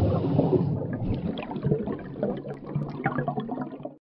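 Water bubbling and gurgling sound effect for an animated logo, fading out near the end.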